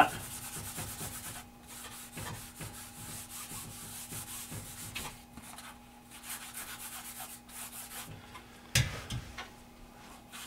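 Charcoal scratching and rubbing on drawing paper: many short, uneven strokes as the charcoal is laid down and smudged across the sheet by hand. A single sharp knock sounds about 9 seconds in.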